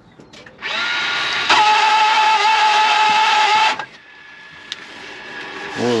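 Range Rover Sport L320 electric parking brake actuator motor running for about three seconds with a loud screech, stepping up in level about a second after it starts and cutting off abruptly, as the EPB switch is pressed to apply the parking brake.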